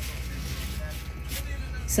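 Steady low hum of a spray-booth exhaust fan running.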